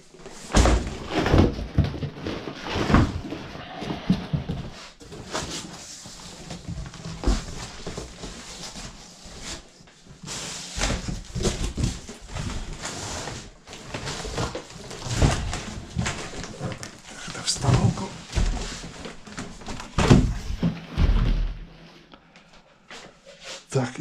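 Packaging being handled: irregular rustling of plastic wrapping and cardboard, broken by several dull thumps as boxes and gear are moved about.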